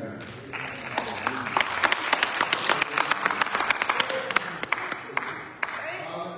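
Congregation applauding: many hands clapping, starting about half a second in and dying down near the end.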